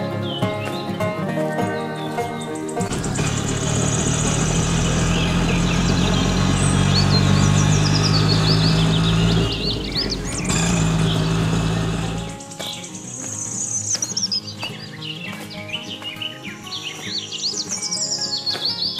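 Background music, then from about three seconds in an auto-rickshaw engine running steadily for about nine seconds before cutting off suddenly, with birds chirping throughout.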